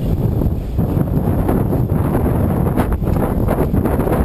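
Wind buffeting a small camera's microphone outdoors: a steady low rumbling noise, with a few brief knocks just before three seconds in.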